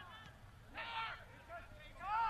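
Faint, distant shouts of soccer players calling to each other on the field, the clearest one about a second in, over low outdoor stadium ambience.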